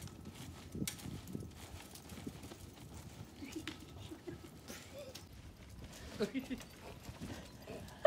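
Two people jumping on a trampoline: a run of soft, uneven thumps from the bouncing mat and springs, with faint voices now and then.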